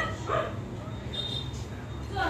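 A dog giving two short yips in quick succession right at the start.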